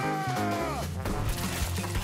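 Background music with a pitched sound gliding downward over the first second. In the second half comes a noisy crunching with knocks, a comic sound effect for a fist punching the cell wall.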